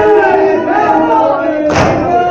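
A group of men chanting a noha, a Shia lament, together, with one sharp, loud slap of matam near the end, many hands striking chests in unison on the beat.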